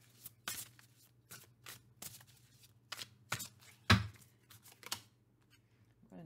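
A tarot deck being shuffled and a card drawn by hand: a run of irregular short papery snaps and slaps, with one louder knock about four seconds in.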